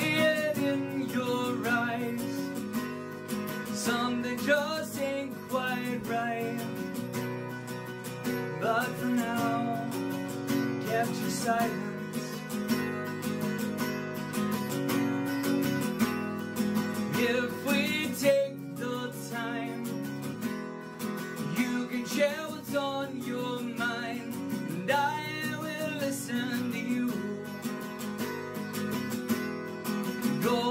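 A man singing with guitar accompaniment in a solo live performance. His sung phrases come and go over the steady guitar, which plays on alone between lines.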